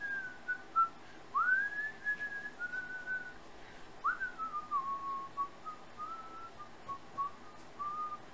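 A person whistling a slow tune in single clear notes, with upward slides into new phrases about a second and a half in and again at four seconds.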